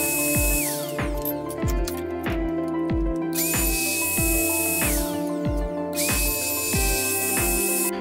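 Background music with a steady beat, over the whine of a Festool OF 1010 router that comes and goes in short runs, falling in pitch each time it winds down.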